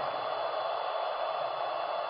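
A handheld dental LED curing light running with a steady, fan-like hiss while it cures light-activated resin on a 3D-printed denture.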